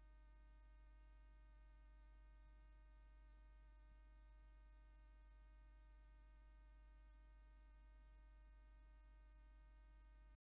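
Near silence: a faint, steady, unchanging hum with no other sound.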